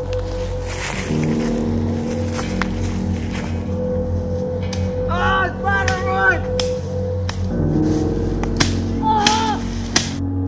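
Eerie background music of sustained drone chords, changing chord about a second in and again past the middle. Short wavering, wailing tones rise and fall over it about halfway through and again near the end.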